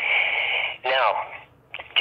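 A man's voice over a narrow, phone-like line: a held, breathy sound for most of the first second, then the spoken word "now".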